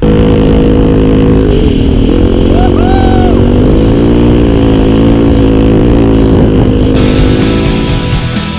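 Enduro dirt bike engine running at low revs while riding, its pitch rising and falling slightly as the throttle changes. Music with a beat comes in near the end.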